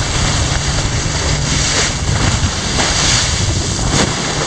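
Wind buffeting the microphone, giving a steady heavy rumble, over the rush of open-sea waves against the hull of a boat under way.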